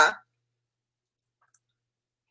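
Near silence after a woman's voice trails off, broken only by one faint click about one and a half seconds in.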